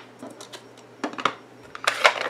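A few light taps and clicks of stamping supplies being handled, with a sharper click near the end as a plastic ink pad case is picked up.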